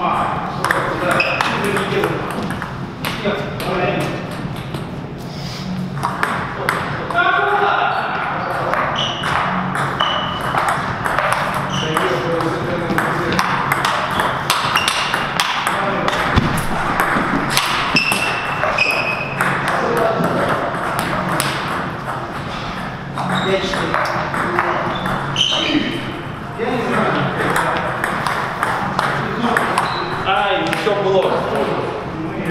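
Table tennis ball being played back and forth in rallies: repeated sharp clicks as the ball is hit with rubber-faced paddles and bounces on the table, with voices talking in the background.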